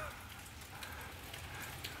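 Faint light freezing rain pattering and dripping on ice-coated trees and ground, a steady hiss with scattered small ticks.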